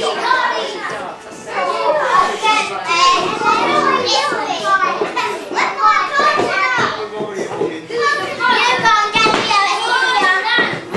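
A group of young children talking and calling out over one another throughout, with no single clear voice.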